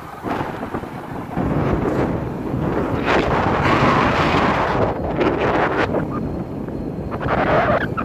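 Wind buffeting the microphone of a handheld camera as a gusty rumble, swelling about a second and a half in, with stronger gusts in the middle and near the end.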